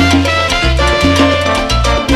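Live salsa band playing an instrumental passage, with a prominent bass line stepping between notes about twice a second under sustained pitched parts and steady percussion.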